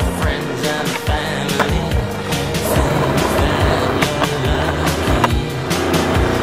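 Skateboard wheels rolling on concrete, with the board clacking, over background music with a drum beat.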